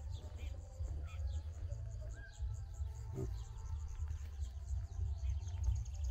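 Countryside ambience: scattered bird chirps and an insect's even, high-pitched pulsing over a steady low rumble.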